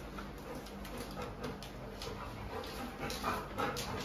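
Labrador retriever panting in short, quick breaths, faint at first and a little louder near the end.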